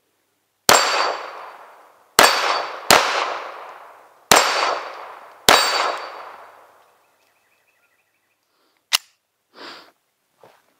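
Five shots from a 9mm Colt Competition 1911 pistol, fired about one to one and a half seconds apart, each leaving a long echo tail and a brief high ring. A single sharp click comes a few seconds after the last shot.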